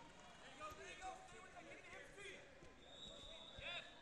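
Faint, overlapping shouts and voices of coaches and spectators in a large gym, with a few dull thuds of bodies on the wrestling mat.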